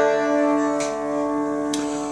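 Steel-string acoustic guitar chord ringing out, with two lighter strums about a second apart, as the guitar introduction to a folk song.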